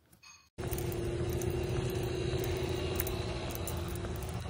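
A sudden cut about half a second in to steady outdoor street noise: a low rumble like road traffic, with a faint steady hum over it.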